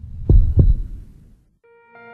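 Logo sound effect: two deep thumps about a third of a second apart over a low rumble, fading out within about a second and a half. Soft sustained musical tones come in near the end.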